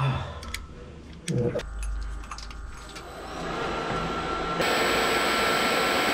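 A machine running with a steady whirring rush and a thin whine. It builds up over the second half and gets suddenly louder about four and a half seconds in, after a couple of short knocks and a low rumble early on.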